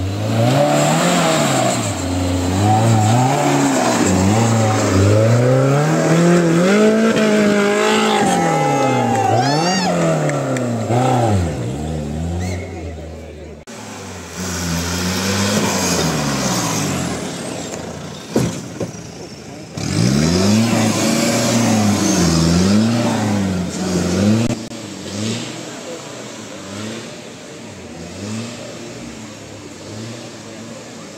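Off-road Mahindra jeep engine revving hard and dropping back again and again, its pitch swinging up and down every second or two as the jeep fights through deep mud, with spectators' voices over it. The revving eases and grows quieter in the last few seconds.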